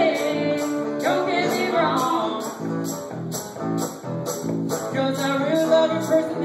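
A live acoustic blues trio playing an instrumental passage: acoustic guitar over a steady jingling percussion beat about twice a second.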